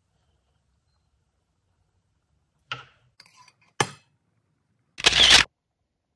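A knock and a few light clicks, then a sharp click, and about five seconds in a short, louder burst of noise lasting about half a second.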